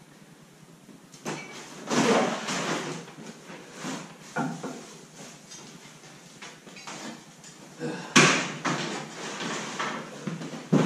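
Scattered knocks and thumps of a plastic box and gear being shoved up into a wooden loft from a ladder, with one sharp, loudest bang a little past eight seconds in.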